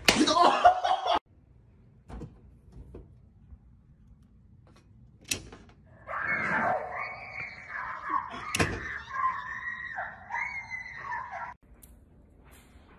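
A hand slapping into a face with a loud cry. After a quiet stretch come sharp clicks of circuit breaker switches, then several seconds of sustained, wavering high-pitched screaming.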